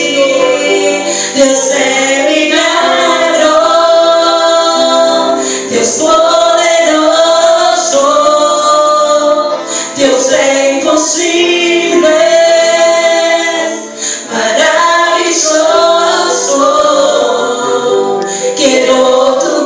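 Two women singing a Spanish-language worship song together into microphones through a PA, over steady held chords. The song runs in long held phrases with brief breaks between them about every four seconds.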